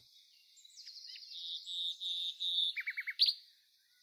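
Faint birdsong: a run of short, high chirps, then a quick trill and a rising note about three seconds in.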